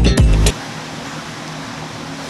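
Background music stops abruptly about half a second in, leaving the steady fan noise of a portable air cooler running.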